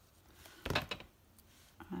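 A plastic glue bottle set down on a cutting mat: one short knock a little under a second in, with a faint click about half a second later.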